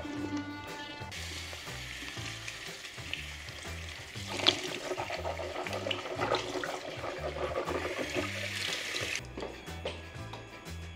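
A tap runs into a bathroom basin from about a second in until shortly before the end. Splashing and knocks come in the middle as someone rinses the toothbrush and mouth at the sink. Before the water starts, a steady electric-toothbrush buzz stops, and background music with a steady bass line plays throughout.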